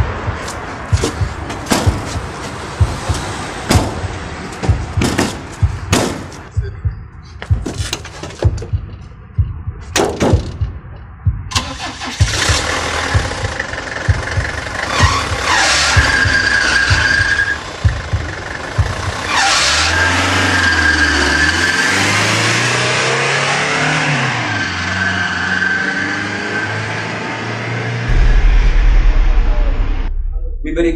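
Car engine running and revving, with pitch rising and falling in the second half and a deeper, louder rumble near the end. The first dozen seconds hold a quick run of sharp knocks or clicks.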